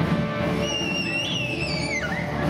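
Music from a children's choir song with its instrumental accompaniment. A high, thin tone sounds above it in the second half and slides downward near the end.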